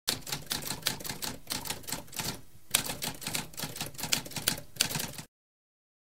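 Typewriter keys struck in rapid succession, with a short pause about two and a half seconds in; the typing stops a little after five seconds.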